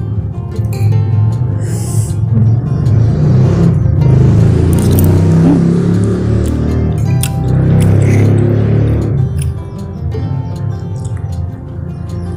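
Background music with steady held tones, overlaid by a loud low rumble that swells in about two seconds in, stays strong for several seconds and fades out near the end.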